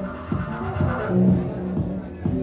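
Live experimental techno played on synthesizers and drum machines: a steady beat, about four strokes a second, under held synth tones.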